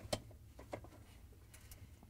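A few faint, short plastic clicks and taps as the dishwasher's lower spray arm is worked loose from its reverse-threaded hub screw, the sharpest just after the start.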